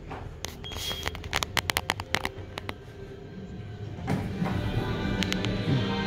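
A quick run of sharp clicks and rattles in the first half, then music comes in about four seconds in and plays on at a steady level.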